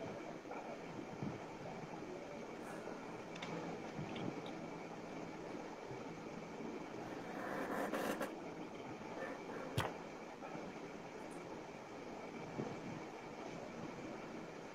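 Steady background hiss of room noise, with a brief louder swell of noise a little past the middle and a few faint clicks, one sharper click near the two-thirds mark.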